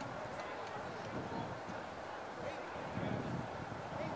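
Faint, distant voices of players and onlookers calling out, over a low, steady background rumble.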